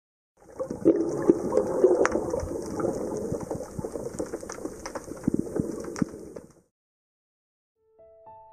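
Gurgling, bubbling water full of small crackles and pops. It starts about half a second in and cuts off abruptly after about six and a half seconds.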